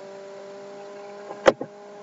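Steady electrical hum of several tones in the recording, with a single sharp click about one and a half seconds in.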